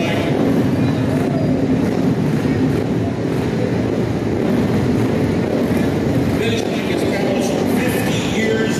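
A pack of flat-track racing motorcycle engines running together on the start line, riders blipping the throttles so the pitch rises and falls in short revs.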